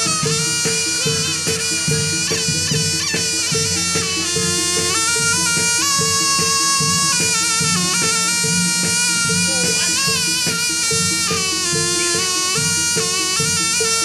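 Live jathilan accompaniment: a shrill reed melody, typical of the Javanese slompret, bends and slides over a steady rhythm of drums and a repeating gamelan note.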